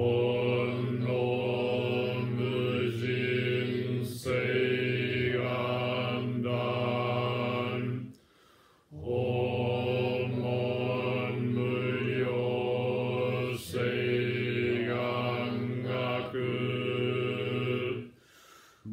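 Zen Buddhist chanting held on one low pitch, in long phrases with a short pause for breath about halfway through.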